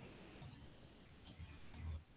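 Three short, sharp clicks of a pointing device, a mouse or stylus, as letters are hand-written onto a shared slide, over faint room noise.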